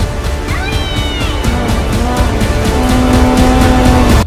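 Loud film soundtrack music with a steady pulse and held low notes that swell toward the end. About half a second in, a high gliding creature call rises, holds and falls away: the dragon's cry from the film's sound design.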